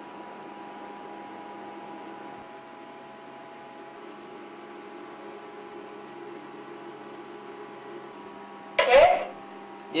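Steady machine hum with several steady tones. A brief loud burst comes near the end.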